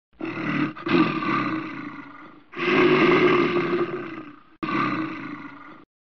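A large animal's roar played as a sound effect, heard three times in quick succession, with the last roar cut off abruptly just before the end.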